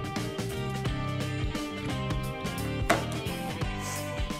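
Background music with a steady beat, and one sharp click about three seconds in.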